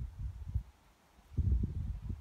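Wind buffeting a phone microphone outdoors: low, uneven rumbling gusts that ease off about halfway through and come back stronger near the end.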